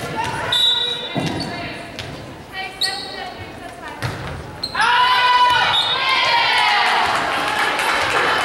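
Volleyball rally in an echoing gym: a short whistle blast near the start, then thuds of the ball being hit. From about five seconds in, players shout and spectators cheer loudly as the point is won.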